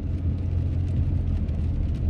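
Steady low rumble of a car heard from inside the cabin: engine and road noise while driving.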